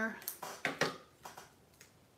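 A few short clicks and taps from a tape-runner adhesive dispenser being run along a small cardstock piece and set down on the table, mostly in the first second.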